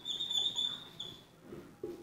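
Dry-erase marker squeaking against a whiteboard as words are written: several short, high-pitched squeaks packed into the first second or so.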